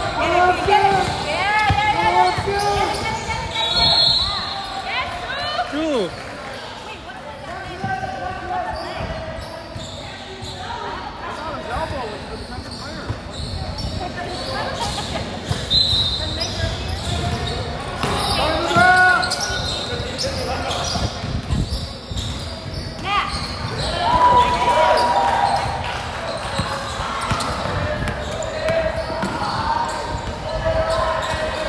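Indoor basketball game: a basketball bouncing on a hardwood court with players' footsteps, under shouting voices of players and spectators that echo around the gym hall.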